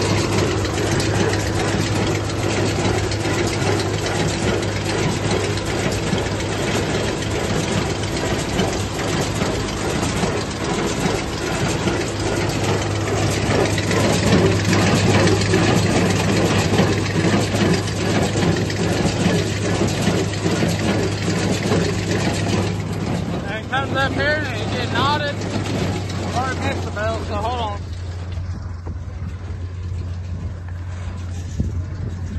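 Tractor engine and small square hay baler running steadily at close range while baling. The machinery sound drops off near the end.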